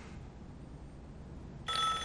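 Quiet room tone, then near the end a landline telephone suddenly starts ringing with a steady, high, multi-tone ring.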